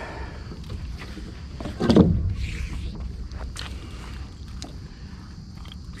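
A magnet with rusty rebar stuck to it being handled on a wooden deck: a heavy knock about two seconds in, then a few light clinks and scrapes of metal, over a steady low rumble.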